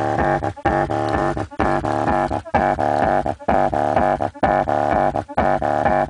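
Bass-heavy music played loud through a car audio subwoofer in a trunk enclosure, driven by a Hifonics Zeus 500 W RMS amplifier. A buzzy repeating bass riff is broken by short gaps about once a second.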